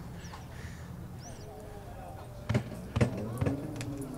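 Champagne corks popping: two loud pops about half a second apart, about two and a half seconds in, followed by a couple of lighter clicks.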